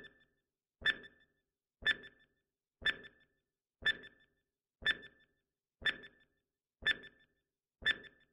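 Countdown timer sound effect: a short pitched tick once a second, each with a brief tail, marking time as the timer runs down.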